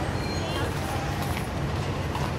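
Busy city street ambience: passers-by talking in a crowd over steady traffic rumble.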